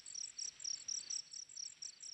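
Crickets chirping: short high-pitched chirps in a steady rhythm, about five a second.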